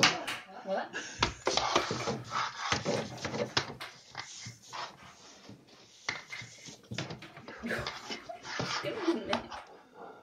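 A frightened brushtail possum scrabbling and knocking about in a panic among the shelves and furniture: a long, irregular string of knocks, scrapes and rustles, with some animal vocal noise.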